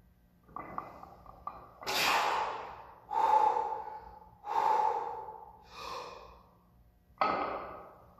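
A weightlifter breathing hard between squat reps under a heavy barbell: five forceful breaths about a second apart, some with a strained, voiced edge. A few faint clicks come just before them.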